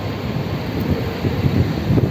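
Wind blowing across a phone's microphone: a loud, low, gusty rushing noise that rises and falls unevenly.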